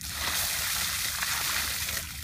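Water poured from a plastic bucket over a seated person's head, splashing onto him and down onto the concrete apron. The steady rush of splashing starts abruptly.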